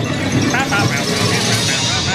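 Dark-ride soundtrack: squeaky, chirpy voice and sound-effect glides over a steady low rumble from the moving ride vehicle.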